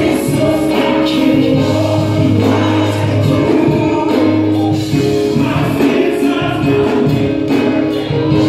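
Live gospel music: a man singing into a handheld microphone over amplified accompaniment with long held bass notes, with choir-like backing voices.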